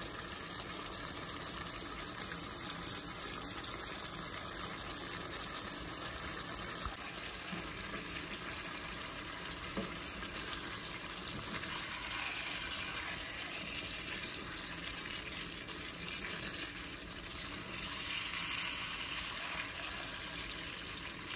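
Chicken liver stew simmering and sizzling in a nonstick wok, a steady bubbling hiss with a few light ticks as a plastic spatula stirs it.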